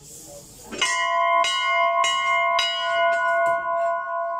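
Large brass temple bell rung by pulling the cloth tied to its clapper. It is struck repeatedly, about twice a second, from about a second in, and its tones ring on between strikes.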